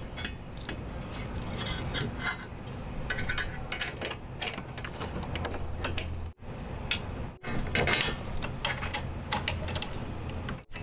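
Six-millimetre Allen bolts being turned in by hand through a metal tailgate bracket, with irregular small metal clicks and scrapes as the threads are started finger-tight. The sound drops out briefly twice, about six and seven and a half seconds in.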